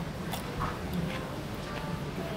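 Biting into and chewing a crispy deep-fried crab rangoon (wonton wrapper stuffed with crab and cream cheese), with one faint crunchy click about a third of a second in, over a low room hum.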